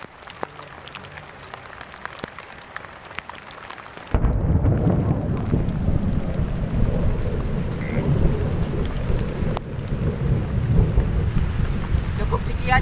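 Heavy rain with thunder. For the first few seconds it is a quieter hiss with scattered sharp drop ticks; about four seconds in it jumps abruptly to a much louder, deep, continuous rumble under the rain.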